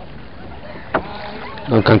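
Steady background noise of a rowboat moving on the river, with a single sharp knock about a second in, typical of an oar against the boat.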